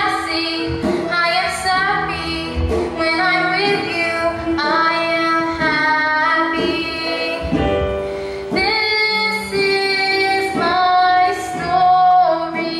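A musical theatre cast singing a number to instrumental accompaniment, with women's and children's voices carrying the melody in held, changing notes.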